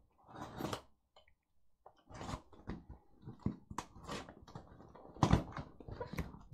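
Cardboard shipping box being cut open with a box cutter and its flaps pulled open: irregular scraping, crackling and tearing, with a louder thump about five seconds in.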